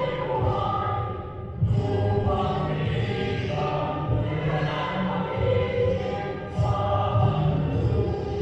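A national anthem: choral singing with musical backing, held notes moving steadily from phrase to phrase.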